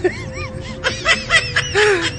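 People laughing in a run of short, high-pitched bursts.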